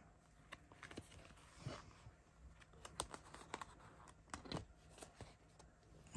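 Faint, scattered light clicks and crinkles of plastic binder pocket pages holding trading cards as they are handled and a page is turned, over quiet room tone.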